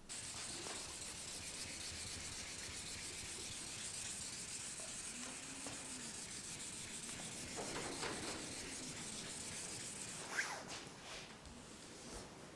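Sandpaper rubbed by hand over wet automotive clear coat, a steady hiss as it flattens a ridge of failed clear coat on the fender. The sanding dies away about ten seconds in.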